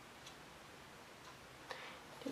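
Near silence: room tone with faint, evenly spaced ticks about once a second, and a slightly louder click near the end.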